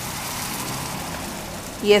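Creamy mushroom sauce poured from a pan into a hot electric skillet over seared chicken, sizzling and bubbling in a steady hiss.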